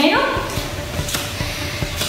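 Soft shuffling with a couple of light knocks as a barefoot person gets up from sitting on a foam exercise mat and stands.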